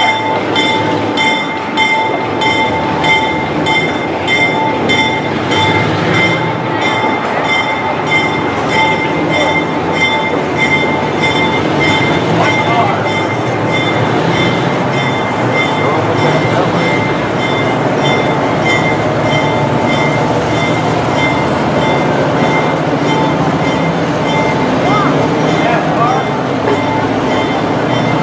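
Railroad passenger cars rolling slowly past, a continuous rumble and rattle with a steady, rapidly pulsing ringing over it, plus people talking nearby.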